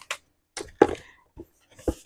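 Rigid cardboard kit box being handled and closed: a handful of light taps and knocks, then a deeper thump near the end as the lid comes down onto the box.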